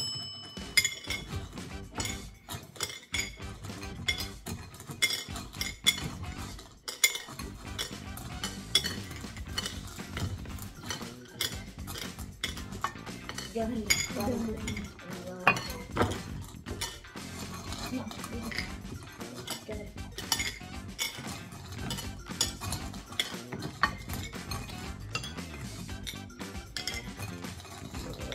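Mike and Ike candies rattling and clicking in a small glass bowl as fingers rummage through them, with a steady run of small clicks as pieces are picked out one by one.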